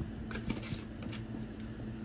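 Ground beef in a cast-iron skillet cooking with a faint, crackly sizzle, with a few soft clicks in the first second and a steady low hum underneath.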